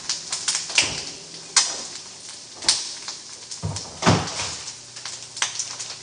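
Household knocks and clatter, like a cupboard or fridge door being opened and closed and things being handled: about six separate sharp knocks spread over a few seconds.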